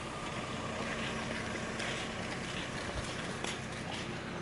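A steady, low motor hum over outdoor background noise, with a single soft knock about three seconds in.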